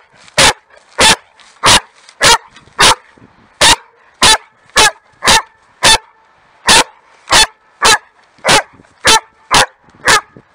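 A dog barking in play at a large stick it is pouncing on: a steady run of about sixteen short, sharp barks, somewhat under two a second.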